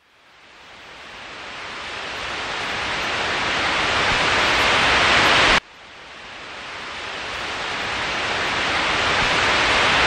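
Static hiss like a detuned TV, fading up from silence and growing steadily louder, cut off abruptly about halfway through, then fading up again.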